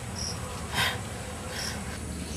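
Insects chirping in dense woodland, with a brief burst of noise a little under a second in.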